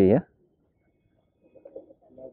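Pigeons cooing faintly in a few short calls near the end, after a man's voice at the start.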